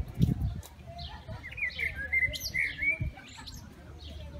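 A bird chirping: a quick run of short, gliding calls in the middle, after low thumps and rumble from the handheld phone near the start.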